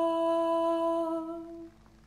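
A woman's singing voice holding one long, steady note, unaccompanied, that fades away about one and a half seconds in.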